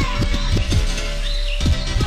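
Hardcore rave music from a DJ mix: a fast, steady kick-drum beat under warbling synth notes that slide up and down in pitch.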